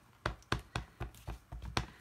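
A stamp tapped repeatedly onto an ink pad to ink it: about seven quick, light taps, roughly four a second.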